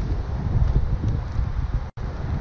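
Wind buffeting an outdoor microphone in low, uneven gusts over the steady hum of road traffic, with a brief dropout in the sound near the end.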